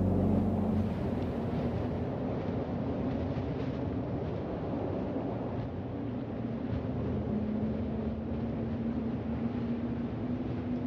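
The song's last acoustic guitar chord dies away in the first second. What remains is a steady low rumbling noise with a faint hum.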